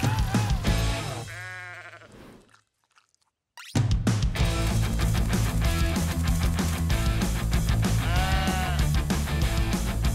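Cartoon soundtrack music fades out with a short pitched cry, stops for about a second, then comes back loud as an upbeat rock track. A cartoon sheep bleats about eight seconds in.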